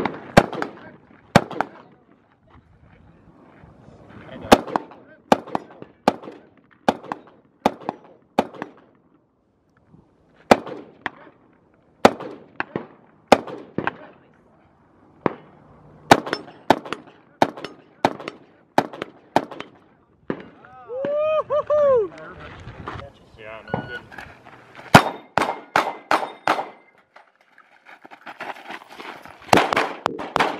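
Rifle shots fired one at a time, mostly about a second apart in strings with short pauses, and a quicker string of shots a few seconds from the end.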